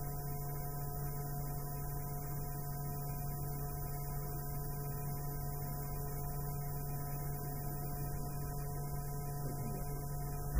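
Steady low mains hum in the audio of an old broadcast recording, with a few faint higher steady tones over it.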